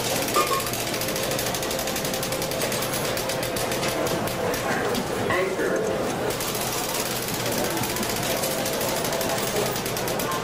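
Casino floor ambience: people talking over a fast, continuous clicking, with steady electronic machine tones mixed in.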